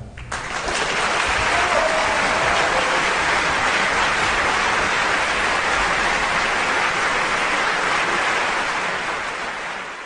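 Audience applauding. The applause builds within the first second, holds steady, and starts to fade near the end.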